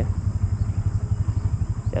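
Strong wind buffeting the microphone: a low, fluttering rumble that rises and falls rapidly.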